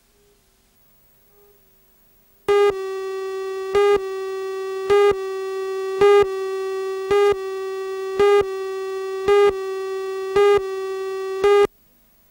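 Steady buzzy electronic line-up tone starting about two and a half seconds in, swelling into a louder beep about once a second, nine beeps in all, then cutting off suddenly near the end: the audio of a broadcast videotape's countdown leader.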